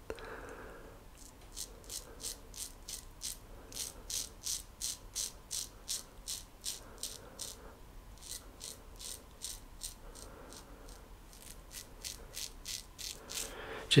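A GEM Flip Top G-Bar single-edge safety razor scraping through lathered stubble on the upper lip in short quick strokes, about three a second, with a short pause a little past the middle.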